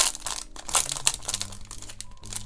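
Clear cellophane card sleeve crinkling as a handmade greeting card is slid out of it, in a few quick rustles.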